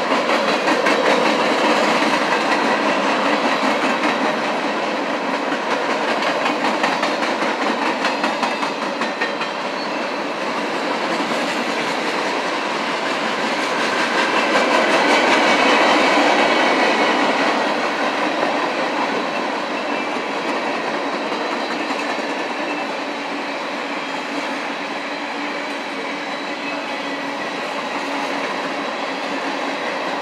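Freight cars of a long passing train rolling by, with the steady rumble and clickety-clack of steel wheels over the rail. It grows louder for a few seconds around the middle.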